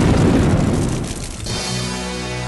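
The roar of a truck explosion sound effect dies away. Closing theme music comes in about three-quarters of the way through.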